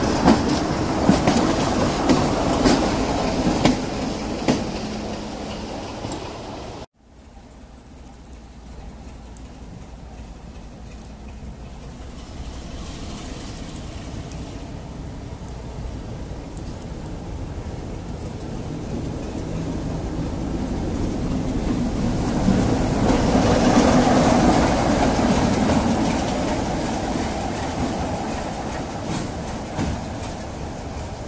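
Class 33 'Crompton' diesel locomotive 33103 passing close at low speed, its Sulzer eight-cylinder engine running and its wheels clicking over the rail joints. The sound cuts off suddenly about seven seconds in; then the locomotive's engine is heard again, faint at first and growing steadily louder as it approaches, loudest about four-fifths of the way through.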